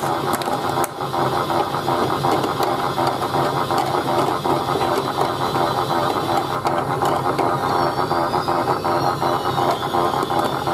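Chad Valley toy washing machine running, its small motor and plastic gears making a fast, steady rattling clatter as the drum tumbles the clothes.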